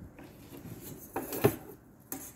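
A brief scrape about a second in, ending in a sharp knock, as a metal ruler is set down on the table.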